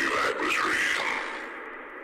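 Echoing electronic sound effects in a drum and bass intro: swirling, gliding tones that fade away over the last second.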